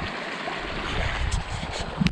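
Water running steadily through a gap opened in a beaver dam, a continuous rushing like a small stream.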